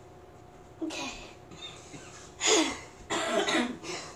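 A girl coughing and clearing her throat, three short bouts a second or so apart.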